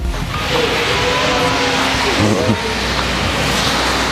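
Fabric car cover rustling as it is handled and pulled off a car, a steady noisy rustle, with faint voices in the background.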